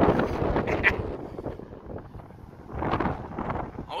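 Wind buffeting the microphone in gusts: strong at first, easing off about two seconds in, then picking up again.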